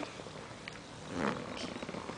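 A baby's short, soft grunt-like vocal sound about a second in, over quiet room noise with a few faint clicks.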